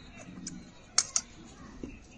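Sharp clicks from a pair of large metal tailor's scissors: a faint one about half a second in, then two loud ones a fifth of a second apart about a second in.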